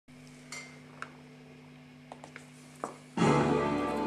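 Electric guitar through an amplifier: a steady amp hum with a few faint clicks from the strings. About three seconds in, a chord is struck and rings on.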